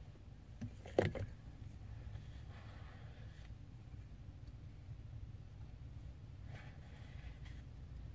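Faint scraping and rustling of two-part plastic epoxy being stirred by hand, over a low steady rumble, with one sharp click about a second in.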